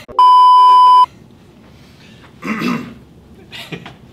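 A loud, steady test-tone beep of just under a second, the tone that goes with TV colour bars. About two and a half seconds in comes a short cough.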